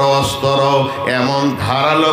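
A man's voice preaching in a melodic, chanted delivery through a microphone, drawing out long held syllables.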